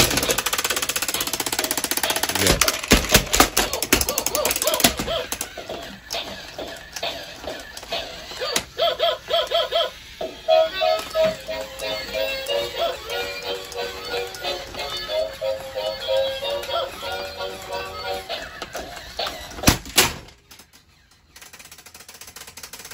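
Robot toy dog running: a fast mechanical clatter from its motor and gears for about the first five seconds, then a simple beeping electronic tune from its speaker for about ten seconds, and a single sharp click near the end.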